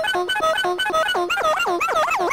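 Circuit-bent Interactive Planetarium toy putting out a buzzy electronic tone that steps rapidly between two pitches. About a second in, it changes to repeated swooping pitch sweeps, about four a second, as the added pitch LFO modulates it.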